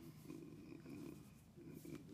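Near silence in a pause between phrases of a man's speech: faint, low murmured hums of a voice over room tone.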